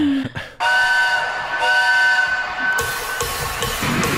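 Live concert recording playing through speakers: a whistle-like chord of held tones sounds in three blasts, the last one longest, as the crowd noise swells near the end. A short laugh comes just before it.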